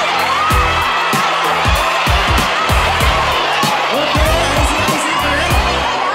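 Concert PA playing a K-pop dance track with a steady beat. Over it a large crowd of fans cheers and shouts, swelling loudly right at the start and staying loud throughout.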